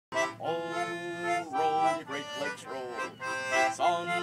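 Concertina playing an introduction in held chords, the chords changing about once a second, with a brief run of moving notes midway.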